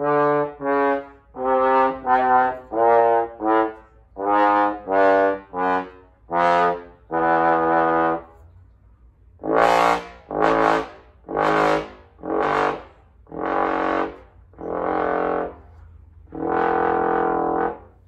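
Jupiter JTB700 small-bore Bb tenor trombone playing a run of separate, tongued notes in its middle and low register, a range the player finds a little tough to play clearly on this horn. There is a short pause about nine seconds in, and the notes after it are louder and brighter.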